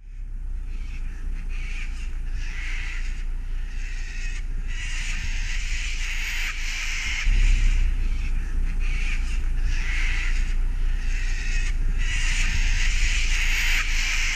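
Birds calling outdoors over a steady low rumble, which gets louder about seven seconds in.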